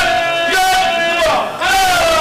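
Congregation of men chanting in unison: one long drawn-out call held on a steady pitch that breaks off about a second and a half in, then a new call rises near the end.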